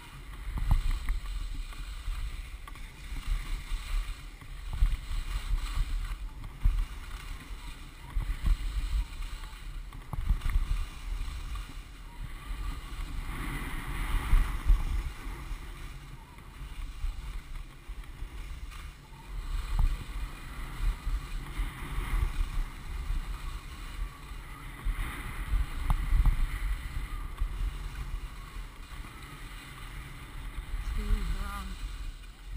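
Wind rumbling and buffeting on an action camera's microphone while skiing downhill, with the hiss of skis scraping on packed snow swelling every few seconds as the skier turns.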